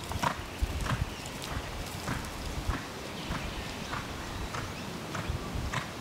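Australian Stock Horse gelding cantering on a sand arena, its hoofbeats falling in a steady rhythm of a little under two strides a second.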